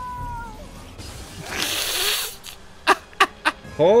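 Animated-film sound effects: a short high tone, then a hissing whoosh about one and a half seconds in, followed by a few sharp cracks as a thrown magic orb bursts into green smoke.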